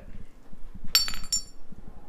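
Two light metallic clinks about half a second apart, each ringing briefly at a high pitch.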